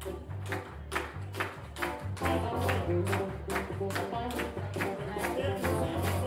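Live gospel band with drums, keys and guitar playing an upbeat groove: a steady beat of sharp hits over a moving bass line and chords.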